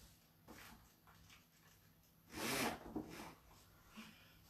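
A roller blind being raised at a window: a few soft rustles and knocks, then one louder rattling swish of about half a second a little past halfway as the blind rolls up.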